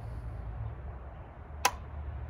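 ALG ACT AR-15 trigger resetting: one sharp metallic click about one and a half seconds in, as the held-back trigger is eased forward until it resets. A low steady hum lies underneath.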